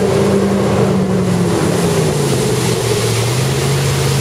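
MasterCraft ProStar ski boat's inboard engine running under way, over a steady rush of wind and water. Its note drops about halfway through and then holds lower.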